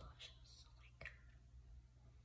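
Near silence, with faint breathy mouth sounds early on and one soft click about halfway through.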